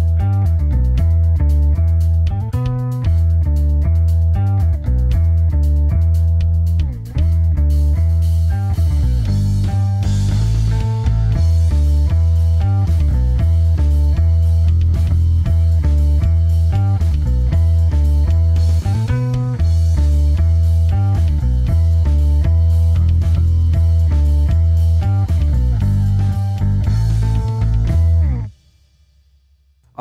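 Electric bass playing a riff through a Boss OC-5 octave pedal, the dry note blended with both an octave-down and an octave-up voice, giving a full, layered tone. The riff stops abruptly near the end.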